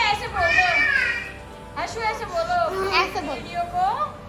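A small child squealing and laughing in high-pitched, sing-song bursts while being played with: two long stretches of squeals with a short pause between.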